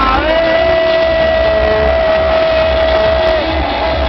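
Loud music playing over a sound system, with a repeating bass beat and one long held note that starts just after the beginning and stops shortly before the end.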